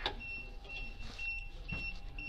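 Automatic car air-conditioning service station sounding its alert: a string of short, high-pitched electronic beeps repeating several times, calling the operator to the machine.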